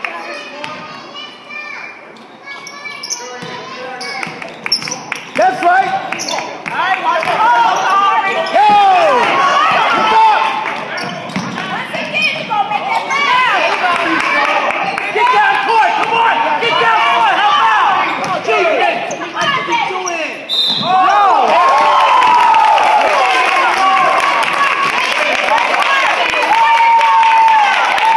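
Live basketball game in a gymnasium: a basketball bouncing on the hardwood court among players' and spectators' voices, echoing in the hall.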